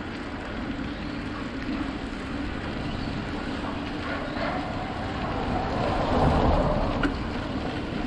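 Wind rushing over the microphone and road rumble from a bicycle riding along a paved street, steady, growing louder about six seconds in, with one sharp click shortly after.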